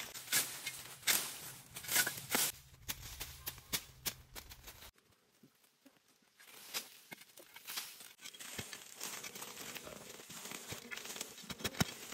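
A metal hoe blade chopping and scraping into dry soil, with crackling of dry grass and leaves, in irregular strokes. It goes much quieter for a moment about five seconds in.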